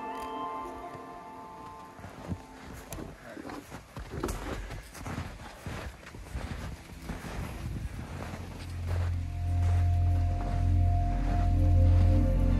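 Footsteps in snow, about two steps a second, with music fading out at the start. Near the end, music with a deep pulsing bass swells up and becomes the loudest sound.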